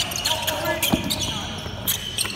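Basketball practice on a hardwood court in a large gym: a ball bouncing, with one sharp bounce about a second in, and players calling out during the drill.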